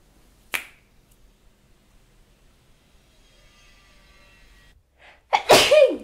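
A person sneezing loudly near the end, with a brief intake of breath just before it and a falling voiced tail. A short sharp noise comes about half a second in.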